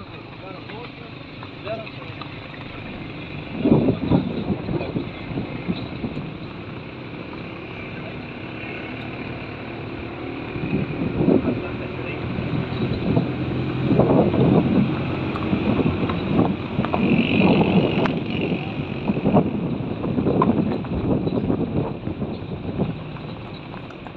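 A vehicle driving along a mountain road, its engine and road noise heard from on board, with people talking indistinctly over it. The noise grows louder and more uneven from about four seconds in.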